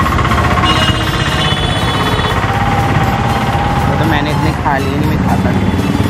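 Street traffic with a rattling engine running close by. Voices join in near the end.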